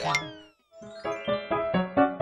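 The tail of a cartoon 'boing' sound effect, falling in pitch, dies away in the first half second. After a brief silence, light, bouncy outro music with quick plucked notes begins about a second in.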